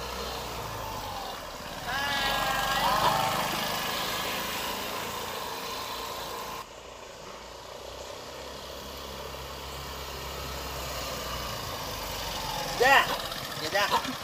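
Small motor scooter engine running as the scooter rides along the street, a steady low hum throughout. A brief high gliding call sounds about two to three seconds in.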